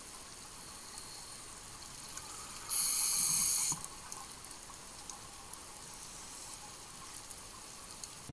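Underwater ambience recorded by a scuba diver: a steady faint hiss with light crackling. About three seconds in comes one loud, high hissing burst lasting about a second, a breath drawn through the diver's regulator.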